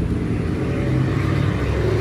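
A motor vehicle's engine running with a low, steady rumble, growing slightly louder toward the end.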